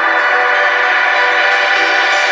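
Trance music: a held, many-layered synth chord with no kick drum or deep bass under it. The chord's lower note shifts about three quarters of the way through.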